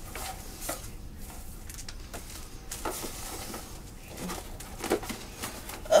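Plastic packaging and shredded-paper filler in a cardboard box rustling and crinkling as a wrapped package is handled and picked at with fingernails, with a few light clicks and taps.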